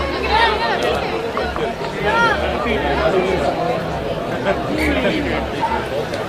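Many overlapping voices of players and touchline spectators calling out and chatting at once, with a few louder shouted calls standing out, around a rugby pitch during play.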